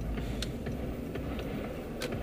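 Car cabin noise while driving: a steady low rumble of engine and road, with a few light, irregular clicks.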